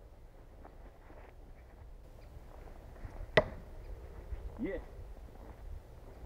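A single sharp knock of steel on wood about three and a half seconds in, from the heavy throwing knife being handled at the wooden log target.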